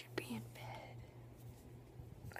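A person whispering a word, then pausing for about a second and a half, with a faint steady low hum underneath.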